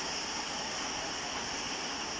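Heavy rain falling, a steady even hiss with no separate strokes or changes.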